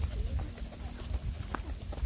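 Footsteps on a path and wind rumbling on the microphone while walking, with a faint steady hum that stops with a sharp click about a second and a half in.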